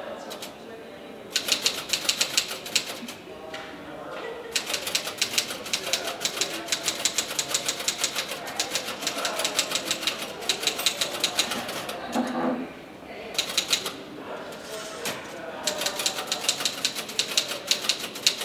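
Rapid typing on a keyboard: fast runs of key clicks in bursts, with short pauses twice.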